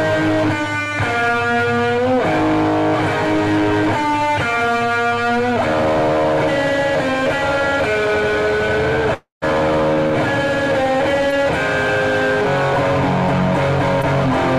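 Electric guitar played live over a video call: held single notes, some bent up in pitch, moving to lower notes near the end. The audio cuts out completely for a split second about nine seconds in.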